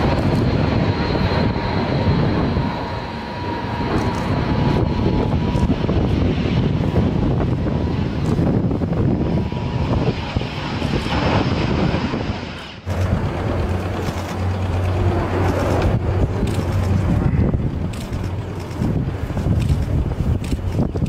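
Jet engines of a Xian H-6K bomber running loud on the airfield, with a thin high whine over the noise for the first several seconds. About 13 seconds in the sound cuts sharply and comes back as steady engine noise with a low hum under it.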